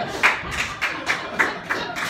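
A steady beat of sharp claps, about three a second, the first one the loudest.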